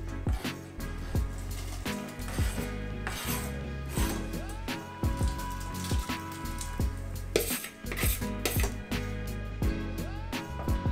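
Background beat music with a steady bass line and regular drum hits, and a synth note that slides up and holds about halfway through.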